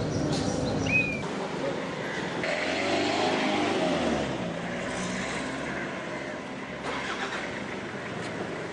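Ambulance van driving by in street traffic: engine running with road noise.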